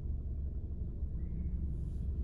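Steady low rumble inside a car's cabin while it sits in stopped traffic, the engine running at idle.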